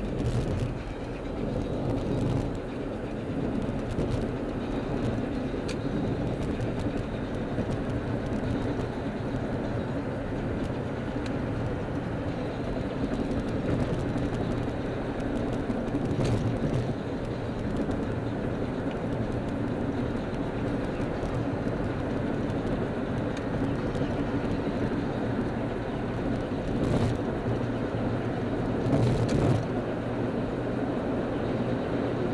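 A car driving in freeway traffic: steady engine and road noise with a low drone, broken by a few brief knocks.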